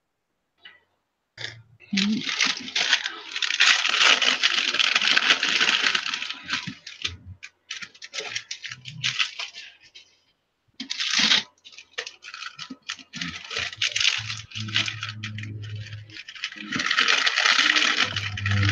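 A clear plastic bag of paper flowers being handled and crinkled, in crackling bursts that begin about a second and a half in, pause briefly about halfway, then resume.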